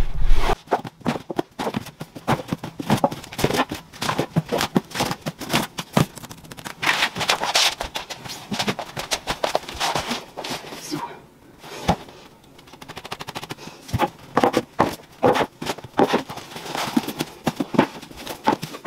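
Books being pulled off a shelf and stacked into a plastic laundry basket: a quick, irregular run of knocks, taps and rustles, with a short lull a little past the middle.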